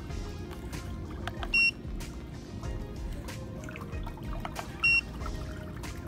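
Two short electronic beeps, about three seconds apart, from a pedicure massage chair's handheld remote as its buttons are pressed, over background music.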